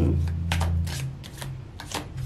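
Tarot cards being handled as the next card is drawn from the deck: a quick string of short, crisp papery snaps and rustles.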